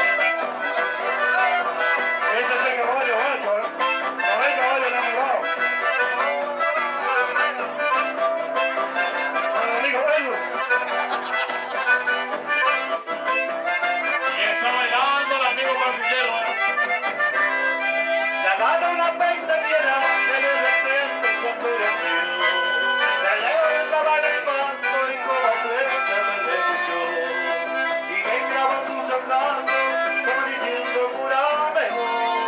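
Live instrumental chamamé: a button accordion plays the melody over strummed acoustic guitars, at a steady lively pace.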